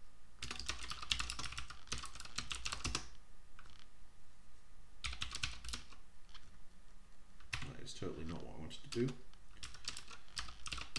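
Typing on a computer keyboard in quick bursts of key clicks, with a pause of about two seconds partway through.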